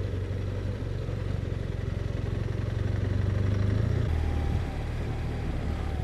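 BMW R1200RT flat-twin boxer engine running while the motorcycle rides along, a steady low drone that builds slightly and then falls back about four seconds in.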